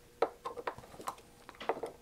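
Hand screwdriver working small screws out of a metal instrument case: a few light, sharp metallic clicks and ticks, the loudest about a quarter second in.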